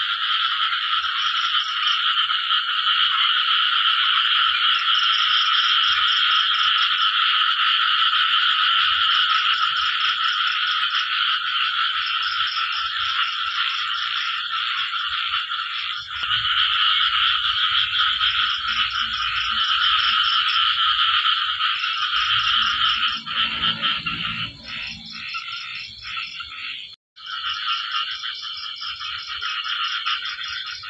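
A dense, continuous chorus of frogs calling at night after rain, with a faster pulsing call above it. Late on, the chorus thins into separate calls, and about 27 s in it cuts out suddenly for a moment.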